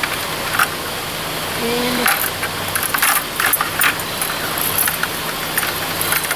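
Metal chain fish stringer clinking and rattling in short bursts as it is handled and lifted with fish on it, over a steady low hum.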